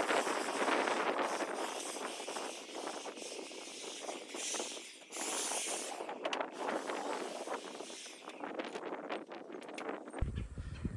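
Wind blowing outdoors, surging and easing, with a few light knocks near the end.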